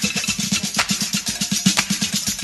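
Funk-disco dance music in a drum-led stretch: a low beat pulsing several times a second, with a snare hit about once a second.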